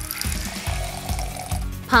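Mango juice running from a thin plastic tube into a glass, a steady trickling pour, over background music.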